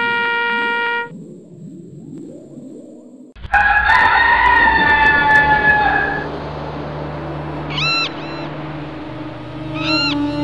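A held brass note ends about a second in. After a quieter gap, a rooster crows once, loud and drawn out, over a low steady hum. Two short chirping calls follow near the end.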